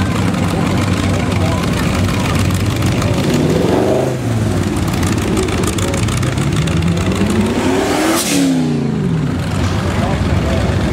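Cruising cars with loud exhausts rumbling past at low speed; one engine revs up in a rising pitch that peaks about eight seconds in, then drops away quickly as it goes by.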